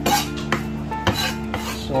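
Chef's knife chopping leafy greens on a wooden cutting board: a handful of irregular knocks of the blade on the board, over quiet background music.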